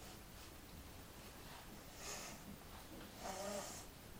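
A boy breathing hard through his nose and teeth while eating extremely sour candy: a short sharp breath about halfway through, then a longer, louder breath near the end with a faint wavering voiced tone in it.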